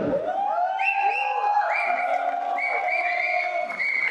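A man's voice through a microphone, drawn out in long held, sung-like notes that swoop up at the start of each one.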